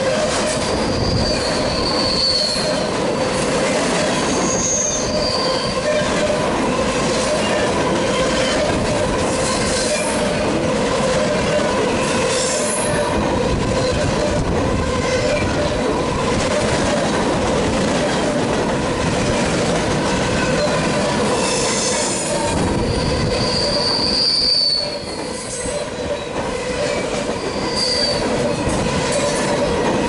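Freight cars of a mixed freight train rolling past at close range: a steady rumble and clatter of steel wheels on rail, with short high-pitched wheel squeals a few times early on and again near the end.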